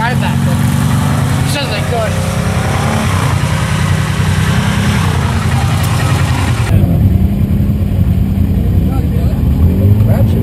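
Side-by-side UTV engine running with a steady low drone, heard from on board, its pitch shifting a little now and then. About seven seconds in the sound changes abruptly and the upper hiss falls away, leaving the engine drone.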